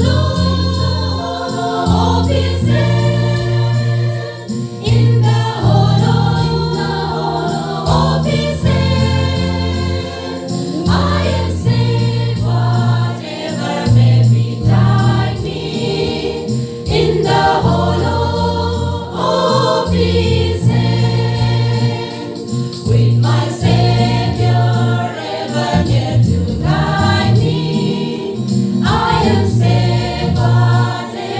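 Women's church choir singing in parts, in phrases with short breaks every few seconds.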